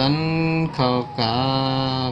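A man's voice chanting or singing in three long, held notes, the last the longest and steadiest.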